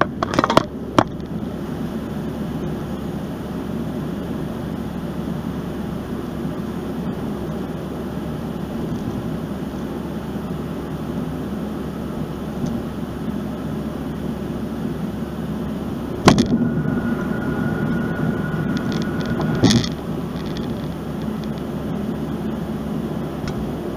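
Steady road and engine noise inside a moving car's cabin. A few knocks come in the first second, and a sharp thump comes about sixteen seconds in. After the thump a faint steady high tone lasts about three seconds.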